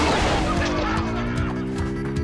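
Cartoon splash of a body dropping into a pool, followed by a held, honking, horn-like tone that rises slowly in pitch.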